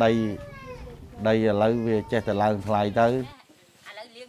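Speech only: a man talking, cut off abruptly about three seconds in, after which only faint quiet background sound remains.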